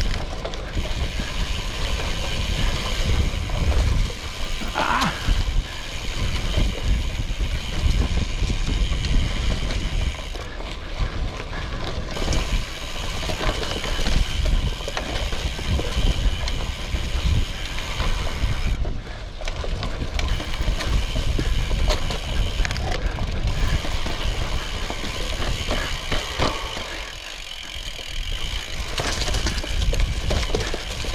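Carbon gravel bike on narrow 34 mm tyres rolling fast down a leaf-covered dirt singletrack: tyres crunching over leaves, dirt and roots, with the bike rattling and clicking over the bumps and a heavy low rumble of wind and trail buzz on the camera microphone.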